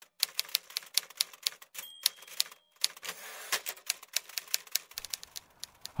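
Typewriter keys clacking in quick, uneven strokes, with a short pause and a brief ringing tone about two seconds in.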